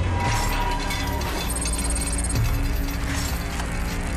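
Metallic rattling and clicking sound effects over a low, held music drone.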